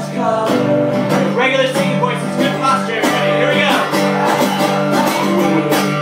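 Acoustic guitar strummed with a man singing along, played live.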